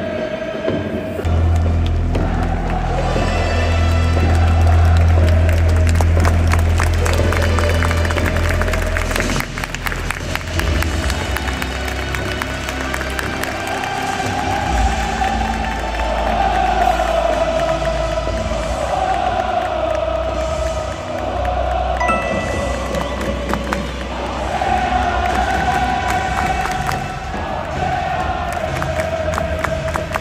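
Music over the stadium PA with a heavy bass that comes in about a second in, mixed with a large crowd of football supporters chanting and singing as the teams walk out.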